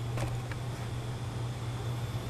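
A steady low hum, with a few faint clicks in the first half second.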